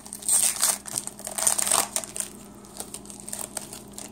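Plastic trading card pack wrapper crinkling as it is handled and opened, loudest in the first two seconds and then dropping to lighter rustling and small ticks.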